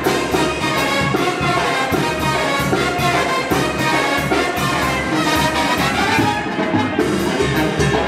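Brass band music playing with a steady beat.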